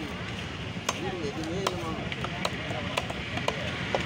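Knife chopping fish on a wooden tree-trunk chopping block: about six sharp strikes, irregularly spaced, roughly every half second to a second.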